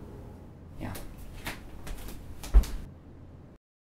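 Several short knocks and clicks, with a heavier thump about two and a half seconds in.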